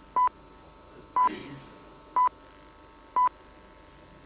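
Four short, high beeps of one steady pitch, exactly one second apart: the time-signal pips of a speaking clock counting off the seconds.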